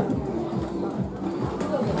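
Faint background music and voices, with ponies' hooves thudding irregularly on the sand arena.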